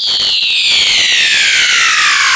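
The electronic track's beat drops out and a single buzzy synth sweep takes over, a high tone gliding slowly and steadily downward in pitch.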